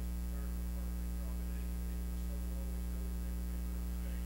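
Steady electrical mains hum in the microphone and sound system: a low, even buzz made of evenly spaced steady tones. A faint, distant voice wavers under it.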